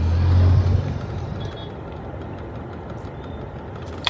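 Low vehicle rumble, loudest in the first second, fading into a steady hum of car noise heard inside the cabin.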